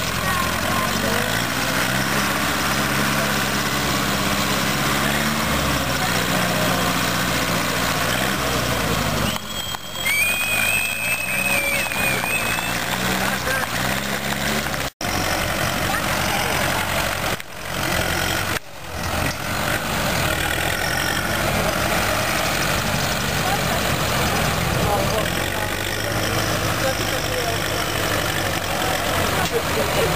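Small tractor engines running under load, their engine speed stepping up and down as they work through a muddy obstacle course, with crowd chatter underneath. The sound breaks off abruptly about fifteen seconds in and twice more a few seconds later.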